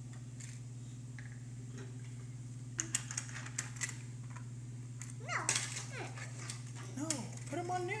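Die-cast toy cars clicking and rattling against a plastic playset track, with a cluster of sharp clicks about three to four seconds in. A child's short wordless vocal sounds come in later, over a steady low hum.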